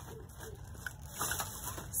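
A few faint clicks of plastic pipe fittings (tees and elbows) knocking together in the hands, over a low steady background rumble.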